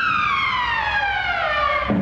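A single long whistle sliding steadily down in pitch, cutting off sharply near the end.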